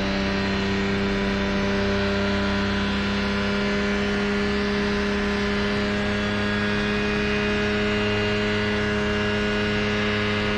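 Kitfox's Rotax 582 two-stroke engine and propeller running smoothly under power for takeoff, holding one steady, even pitch. The engine is running well now that its rough running has been fixed with rebuilt Bing 54 carburettors.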